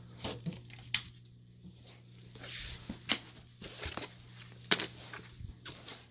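Handling noises: scattered sharp clicks and knocks with light rustling as someone fiddles with an aquarium light's plug and timer, over a steady low hum.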